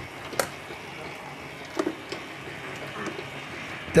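Commercial mixer's grinding attachment running steadily as cooked chickpeas are ground into hummus paste, with a few light clicks and knocks.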